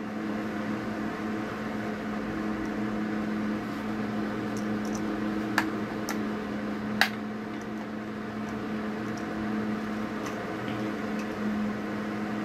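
A steady machine hum with a low tone runs throughout. In the middle come two sharp clicks about a second and a half apart, as a push-on spade terminal is worked onto the tab of a rocker power switch.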